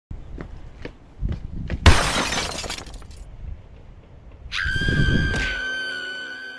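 Sound effects: a few light taps, then a loud crash with shattering noise about two seconds in. From about four and a half seconds a steady high ringing tone sounds over a low rumble.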